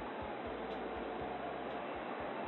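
Steady background ballpark ambience: a faint crowd murmur under a mock AM radio baseball broadcast, sounding thin and band-limited like an AM radio.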